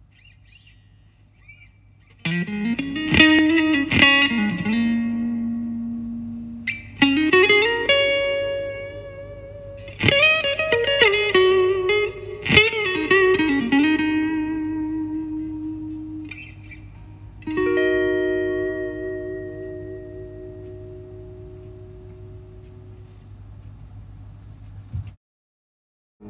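Electric guitar played clean through an amp with the fuzz pedal switched off: single notes with slides and string bends, each left to ring and fade, then a chord about two-thirds of the way through that rings out. A steady low hum sits underneath.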